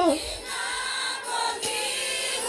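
Live singing over a stage PA: a woman's long held note cuts off right at the start, followed by quieter, broken singing and voices, with the crowd singing along.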